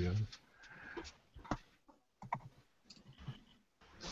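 A few faint, scattered clicks, with a brief voice sound right at the start.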